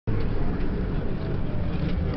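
Steady rumble of a car in motion, engine and road noise heard from inside the cabin.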